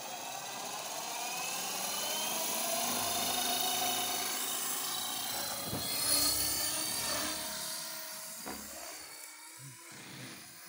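Radio-controlled model helicopter spooling up: a whine rising in pitch over the first few seconds as the main rotor comes up to speed, then holding steady with the rotor whooshing. It grows fainter over the last few seconds.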